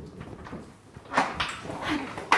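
A woman whimpering and groaning in pain in short, loud bursts from about a second in.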